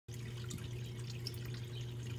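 Koi stock tank's filter circulating water: a faint trickle with small drips over a steady low hum.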